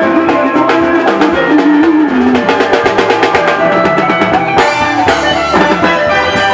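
Live Congolese band music with a fast, busy drum-kit beat under a bending melodic line, and two cymbal crashes about four and a half seconds in.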